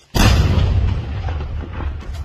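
An IED blown up by security forces in a controlled detonation: one sudden, very loud blast just after the start, followed by a long rumbling tail that slowly fades.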